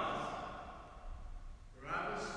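A pause in a man's reading voice in a large, echoing church. The last word fades away about a quarter second in, and a quick intake of breath comes near the end just before he speaks again.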